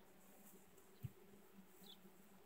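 Faint, steady hum of honeybees at an open hive, with a single soft knock about a second in.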